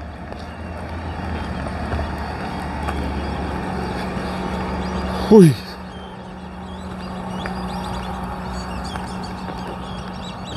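Steady hum and rumble of nearby vehicles running, swelling over the first few seconds and then easing off. About halfway through, a short, loud sound slides steeply down in pitch.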